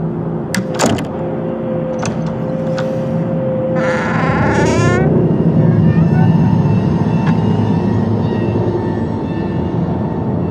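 Low, rumbling horror-film underscore that swells in the second half. A held tone runs through the first four seconds, and a brief wavering pitched sound comes about four seconds in. Two sharp clicks come near the start.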